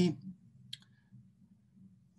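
The tail of a spoken word, then a pause holding a single short, sharp click just under a second in, over a faint steady low hum.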